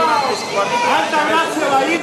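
Speech only: a man talking, with other voices chattering behind him.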